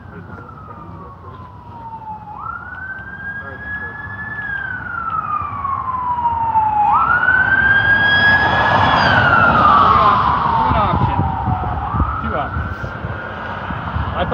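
Emergency vehicle siren on a slow wail: each cycle climbs quickly and then falls slowly, about every four and a half seconds. It grows louder toward the middle and eases off a little near the end.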